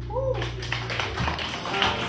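Live jazz band: a short sliding vocal sound, then, about a third of a second in, the drum kit comes in with quick, irregular percussive taps over upright bass notes.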